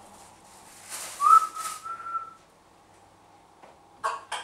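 A person whistles one short note, sliding up and then held for about a second, over brief rustling and handling noises at a kitchen counter where sandwiches are being made.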